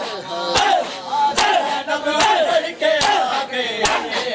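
Matam: a group of men beating their chests in unison with open hands. Sharp slaps come about every 0.8 seconds, five in all, over men's voices chanting a lament.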